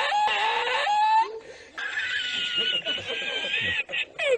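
A man laughing hard and uncontrollably in long, high-pitched, wheezing squeals, broken by a short catch of breath a little after a second in.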